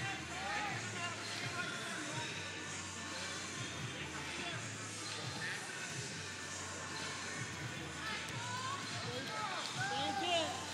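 Faint background music in a large hall, with scattered distant shouted voices, more of them near the end.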